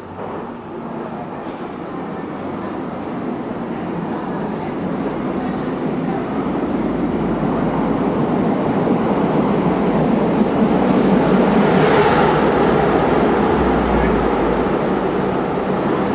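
Loud, dense rushing rumble that builds gradually, peaks about twelve seconds in, then eases slightly.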